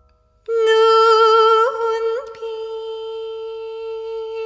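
A female voice singing Korean jeongga, holding one long note that starts about half a second in, with a slow wavering vibrato and two quick upward flicks of pitch in the middle.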